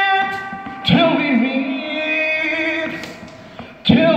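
A man singing a hymn solo and unaccompanied into a microphone, drawing out long held notes with vibrato. One note fades, a new phrase comes in about a second in, and another starts just before the end.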